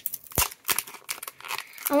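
Foil wrapper of a Pokémon booster pack being torn open and crinkled by hand: a sharp crackle about half a second in, then a run of lighter crinkles.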